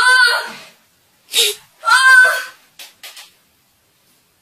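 A boy's loud anguished wails: two long cries that rise and fall in pitch, with a sharp breath between them, then a few short breaths. It is his dismay at finding his smartphone's screen smashed by hammer blows despite its protective case.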